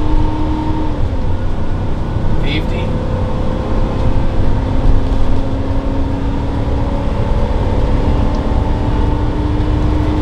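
Inside the cab of a 2008 Monaco Monarch gas motorhome with a Vortec 8100 V8, accelerating at highway speed: a deep, steady rumble of engine and road noise. Engine tones climb slowly and drop in pitch about a second in. There is a brief high chirp about two and a half seconds in.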